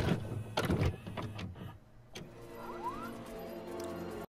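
VCR-style transition sound effect: a run of mechanical clunks and clicks like a cassette being loaded, then a steady motor whir with a short rising chirp.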